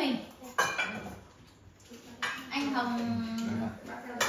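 Dishes and cutlery clinking during a meal at the table, with a sharp clink about half a second in and another a little after two seconds.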